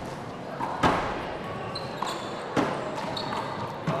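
A wallball rally: the small rubber ball is smacked by hand and rebounds off the wall and the wooden floor, about four sharp hits spread unevenly over the few seconds. Each hit echoes in a large hall.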